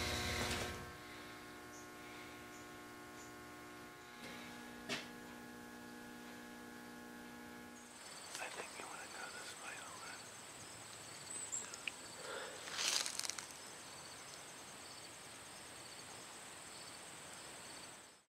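Faint room tone with a steady low hum, then about eight seconds in faint outdoor ambience: a high, steady insect trill with a few brief faint sounds a few seconds later.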